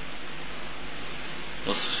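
Steady hiss of the recording's background noise in a pause between a man's lecture speech; his voice comes back near the end.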